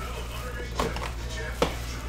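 Plastic shrink-wrap crinkling as it is pulled off a cardboard trading-card box and the box is opened, with two sharp snaps, one a little under a second in and one near the end.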